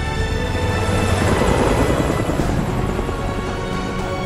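Helicopter rotor chop swelling in as it passes overhead, loudest about two seconds in and then easing off, over film score music.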